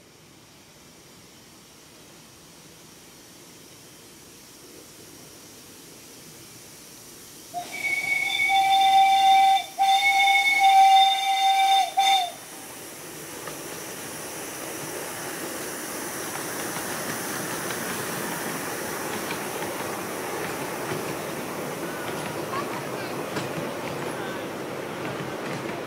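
Miniature 2-8-0 steam locomotive modelled on a GCR 8K class, sounding its whistle about eight seconds in: a long blast and then a second one, split by a short break. Then the locomotive and its train of passenger carriages run past on the rails, the rumble growing louder as it nears.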